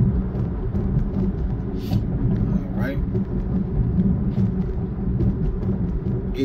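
Road noise inside a moving car's cabin: a steady low rumble of tyres and engine.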